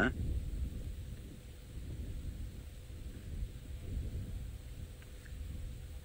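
Low, uneven rumble of outdoor background noise, with no bird calls or other distinct events.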